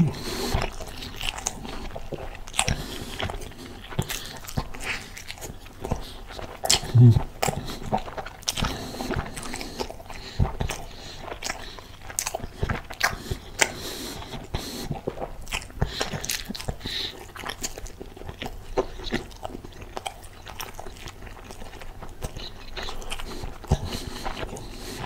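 Close-miked chewing and biting of a turkey burger with melted cheese in a soft bun, dipped in ketchup, with many short mouth clicks throughout. About seven seconds in, a brief low vocal sound from the eater stands out as the loudest moment.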